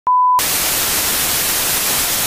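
A brief steady test tone of the kind played with colour bars, cut off after about a third of a second by loud, even television static hiss.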